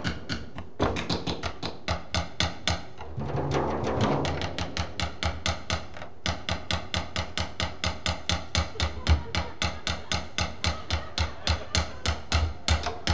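Drumstick rapping a hard floor and the sole of a leather shoe, a fast, even stream of sharp knocks at about five a second with low thuds underneath. A brief rushing swell comes about three to four seconds in.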